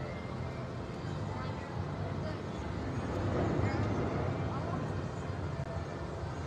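Playground ambience: faint, indistinct voices of children over a steady low rumble, a little louder a few seconds in.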